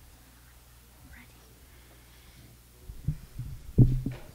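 Low room hum with faint whispering, then a cluster of short, low thumps and bumps in the last second, the loudest just before the end: microphone handling noise as singers adjust the mics on their stands.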